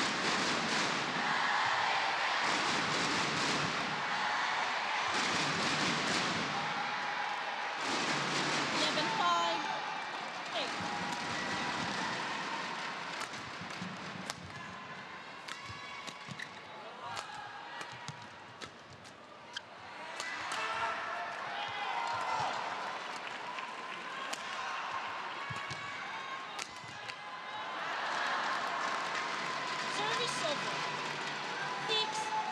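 Indoor badminton arena: crowd murmur and indistinct voices. During a quieter rally in the middle, a shuttlecock is struck back and forth with sharp racket hits and shoe squeaks on the court. The crowd noise swells again as the rally ends.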